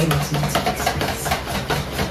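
Wire whisk beating thin takoyaki batter in a mixing bowl, the wires clicking irregularly against the bowl.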